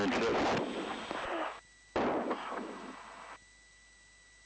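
Aircraft VHF radio static as a transmission ends: a hiss that cuts off, then a second burst of static opening with a click about two seconds in and cutting off again after about a second and a half as the squelch closes.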